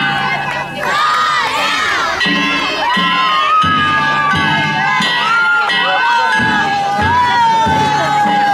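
A crowd shouting and cheering around a danjiri festival float, with long held calls. Under them the float's taiko drum beats and its gongs keep ringing.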